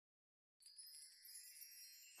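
Silence, then about half a second in a faint, high-pitched chime shimmer begins, like wind chimes, as musical sound effects.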